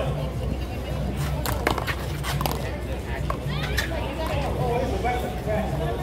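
A quick series of sharp smacks from a one-wall handball rally, as a small rubber ball is struck by hand and bounces off the concrete wall and court, about one and a half to two and a half seconds in. Voices sound in the background.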